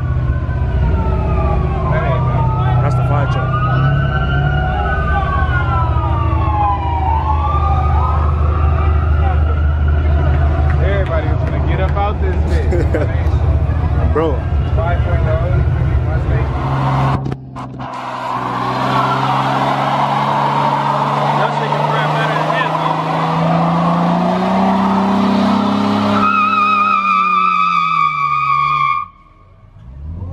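Loud muscle-car engines rumbling, with a siren wailing up and down over them through the first half. After a cut, an engine winds up with steadily rising pitch over a hiss of spinning, squealing tyres as a burnout builds, with a warbling tone near the end.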